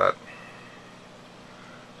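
A single spoken word at the start, then faint steady room noise with nothing else standing out.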